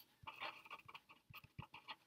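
Faint felt-tip marker strokes on paper: a run of short, quiet scratches and taps as words are written out.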